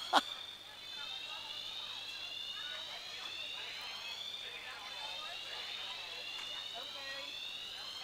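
Building fire alarm siren sounding faintly: a high wailing tone that slowly rises in pitch and starts over about every four seconds, like an air-raid siren.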